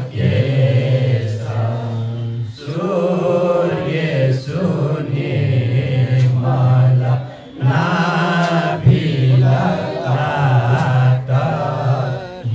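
A group of men's and women's voices chant a devotional hymn together through microphones, a man's voice carrying the low line. The phrases are long and held, with short breaks about two and a half and seven and a half seconds in.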